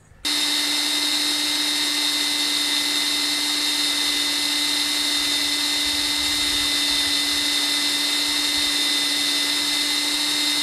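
Electric drill running at a steady speed, a continuous whine starting just after the beginning, as it drives a reverse twist (left-hand) drill bit into a broken-off bolt in a cast-iron manifold.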